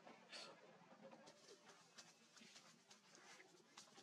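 Near silence: faint background hiss with a few soft, scattered ticks and rustles.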